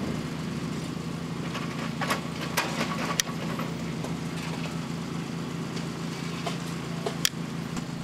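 An engine idling with a steady low hum. Over it come a few sharp clicks, about two to three seconds in and once near the end, as a large hand crimping tool is worked to crimp an aluminum connector onto the service wire.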